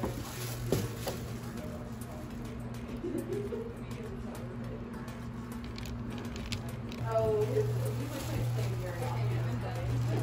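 Indistinct background voices over a steady low hum, with one voice coming through more clearly about seven seconds in.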